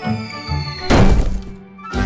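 Cartoon sound effect of giant stone tablets crashing down: a thin whistle glides downward, then a loud heavy thud about a second in, with a second low thump at the end, over background music.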